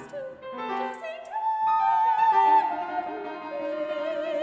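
A soprano sings fragmented syllables in a contemporary classical art song, with a long held note near the middle, over a piano part of quick, angular figures.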